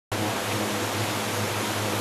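Powerboat engine running steadily at speed, at about 4,200 rpm, a steady low hum under the rush of wind and churning wake water.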